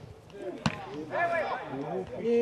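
A football kicked on grass pitch: one sharp thud about two-thirds of a second in. Then several voices shouting and calling out on the pitch.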